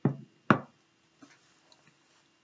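A glass of iced drink set down on a tabletop, with one sharp knock about half a second in, the loudest sound. Faint rustling of a paper napkin follows.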